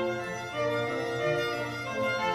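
Solo violin playing a melody of sustained, bowed notes that change every half second or so.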